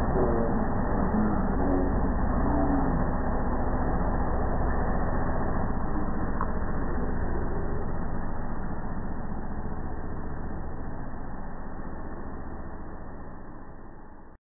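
LG gas dryer running, a steady low hum from its drum motor and blower, fading out over the last several seconds.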